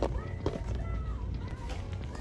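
Shop-floor background: a low steady hum under a faint, distant voice, with two sharp clicks in the first half second.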